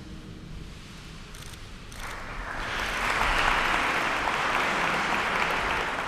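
Audience applause that begins about two seconds in and grows louder, holding steady to the end.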